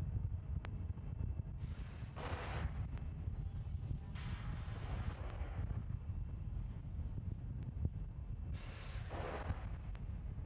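Wind rumbling on the microphone, with three hissing bursts, about two seconds in, midway and near the end: propellant vapour venting from a fuelled Falcon 9 on its pad.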